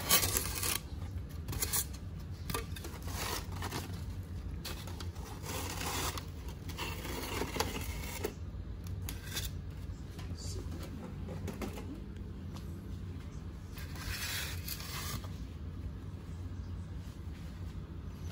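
Hands rustling and scraping a cardboard shipping box and its foam packing in irregular bursts, over a steady low hum.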